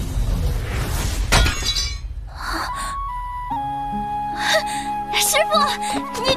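Animated-drama soundtrack: dense rumbling sound effects end in a sharp crash about a second and a half in, then a gentle music cue of held notes comes in a couple of seconds later, with brief wordless voice sounds near the end.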